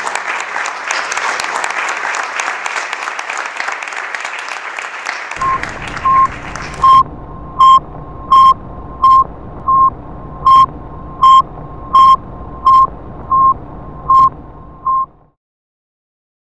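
Audience applauding, dying away about seven seconds in. From about six seconds, a loud electronic beep at one steady pitch repeats thirteen times, roughly three beeps every two seconds, over a low hum, and then the sound cuts off abruptly.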